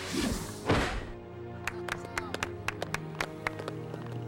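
Background music, with a heavy thud about three quarters of a second in as a wrestler lands a flip, then a few people clapping sparsely for about two seconds.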